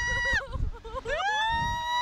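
High-pitched screaming from riders on a slingshot thrill ride: a short scream at the start, then a long held scream that rises, holds and falls from about a second in, over wind rumble on the microphone.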